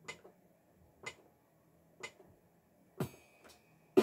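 Metronome ticking about once a second, being set to a tempo; near the end a slightly different, sharper click.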